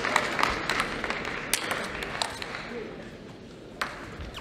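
Sharp clicks of a celluloid table tennis ball striking bats and the table, scattered over the first two seconds and once more near the end. Crowd noise in the hall fades over the first three seconds.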